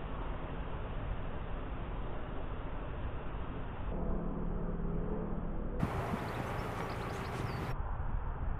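Narrowboat's diesel engine running steadily under way, a low hum beneath wind and water noise.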